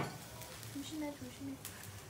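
Quiet speech, a warning to be careful, with a few faint sharp clicks near the end from metal tongs handling hot grilled skewers.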